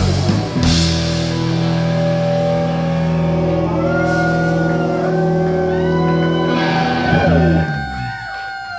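Live rock band playing electric guitar, bass guitar and drums, loud, with long sustained chords. Near the end the song closes on a final chord that is left to ring out.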